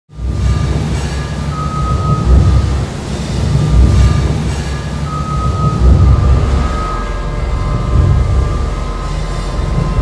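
Loud mechanical rumble that swells and surges unevenly, with a steady high whine that comes in twice for a second or two.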